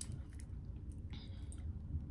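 Quiet room tone with one brief, soft hiss a little over a second in: a perfume atomizer spraying onto a test strip.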